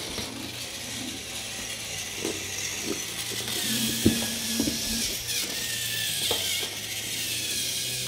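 Battery-powered motorized toy train engines running on plastic track: a steady whirr of small motors and gears, with a few scattered clicks.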